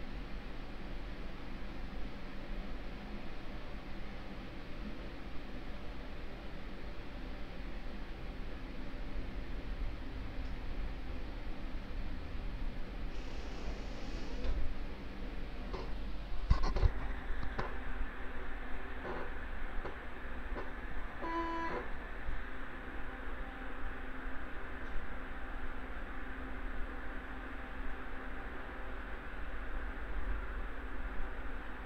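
Steady background hiss and low hum from an open microphone, with a few sharp clicks around the middle and one brief pitched blip a little later.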